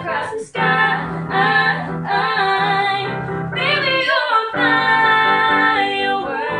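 A girl singing a pop song to her own accompaniment of held chords on a Yamaha digital piano keyboard. The voice and chords break off briefly about half a second in and again about four seconds in.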